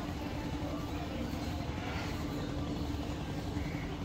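A steady motor hum holding one constant low tone, over outdoor background noise with faint distant voices.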